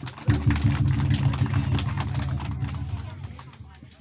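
Deep booming percussion from the dance's accompaniment: one hit about a third of a second in that rings on and fades away over about three seconds, with quick clicks and taps above it.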